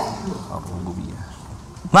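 A short pause in a man's speech, holding only low background room noise, with his voice starting again near the end.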